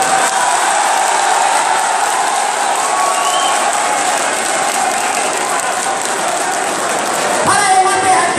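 A large crowd applauding: a dense, steady wash of clapping with voices mixed in. Near the end it gives way to a man's voice.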